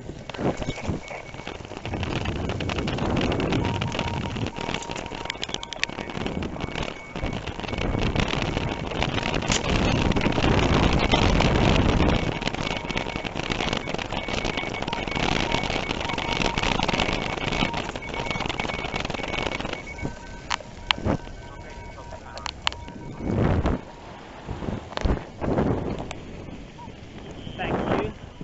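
Wind rushing over the microphone, with tyre and rattle noise from a bicycle being ridden along a road. It is loudest about a third of the way in and eases after about twenty seconds. A few sharp knocks come near the end.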